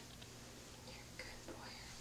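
A faint, soft whispered voice, over a low steady hum.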